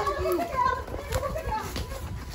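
Children shouting and squealing excitedly while running, with footsteps on leaves and earth underneath.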